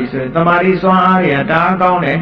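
A Buddhist monk's voice in a steady, chant-like recitation with long held syllables on a nearly level pitch.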